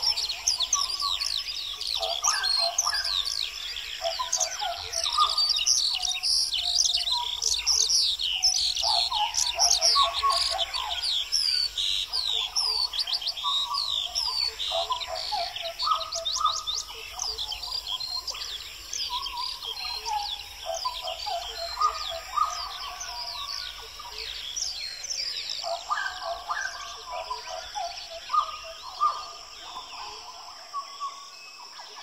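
A chorus of many birds chirping and singing at once, with dense rapid high chirps over lower, repeated song phrases throughout.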